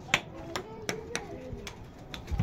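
Small balls and water balloons rattling against the plastic baskets as hands grab them: about six sharp, separate taps and clicks, with faint children's voices beneath.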